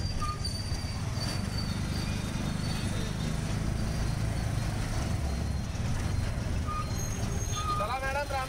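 Auto-rickshaw running through city traffic, heard from inside the open cab: a steady low engine and road rumble with the noise of surrounding motorbikes and cars. A voice starts just before the end.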